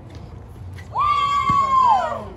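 A child's high-pitched yell, held for about a second and falling off at the end. A ball bounces once partway through it.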